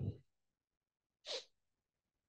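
A single short, sharp breath noise from a man, a quick nasal or throat burst about a second in, like a small sneeze or snort, after the last word trails off.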